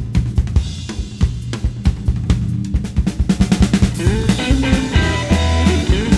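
Live rockabilly band: a drum kit playing a steady beat on snare and bass drum over a walking upright double bass line, with electric guitar notes coming in about halfway and bending.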